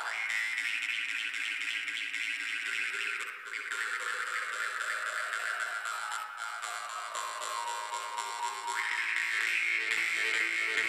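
Sakha khomus (metal jaw harp) playing: a steady twanging drone with a bright whistling overtone melody that slides slowly downward, then jumps back up near the end.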